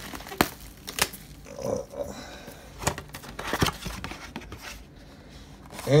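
A small cardboard trading-card box and its plastic wrapping being handled and opened, crinkling and tearing with a few sharp clicks and taps.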